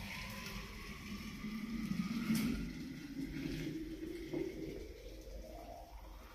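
Water running into a cooking pot. The filling sound rises steadily in pitch as the pot fills.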